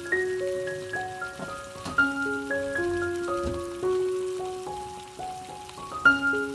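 Background music, a light melody of ringing notes, over the sizzle and crackle of salmon pieces frying in hot oil in a pan.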